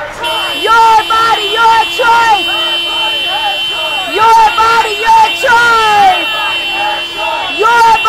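Car horn held in one long continuous blast, starting just after the beginning and cutting off near the end, over a crowd shouting.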